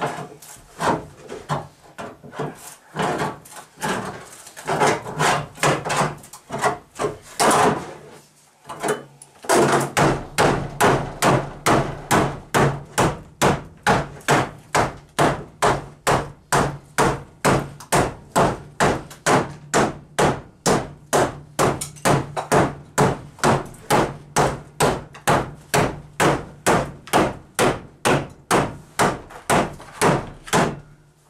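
Hammer blows along the cut sheet-metal edge of a car body, worked into a safety edge. They are irregular taps at first, then from about ten seconds in a steady run of about two blows a second over a low steady hum.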